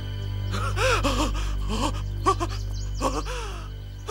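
A person's breathy gasps and short strained voiced cries, several in quick bursts, over a steady low drone of background music.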